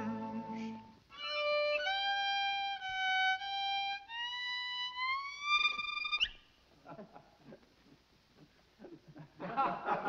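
Solo violin playing a slow phrase of several long held notes, ending in a quick upward slide about six seconds in, followed by a few seconds of near quiet.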